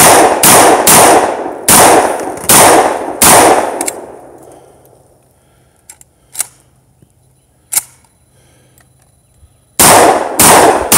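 A Saiga-12 semi-automatic 12-gauge shotgun firing rapid single shots, about six in the first three and a half seconds, each shot ringing on after it. Then comes a pause of several seconds with a few faint sharp clicks, and firing starts again just before the end.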